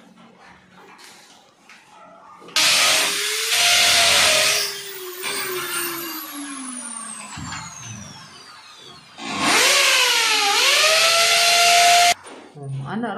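Corded power drill boring into a wall in two bursts. After the first, the motor winds down in a long falling whine. The second starts about nine seconds in, its pitch dipping and then rising as the bit bites.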